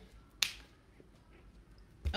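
A single sharp click about half a second in, over faint room tone.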